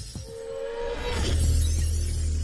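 Logo-reveal intro music with sound effects: a brief held tone and glassy high shimmer, then a deep bass swell coming in a little over a second in.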